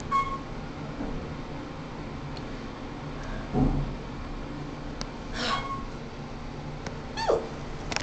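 About 50-year-old Otis elevator running between floors: a steady low motor hum in the cab, with a few brief high squeaks along the way.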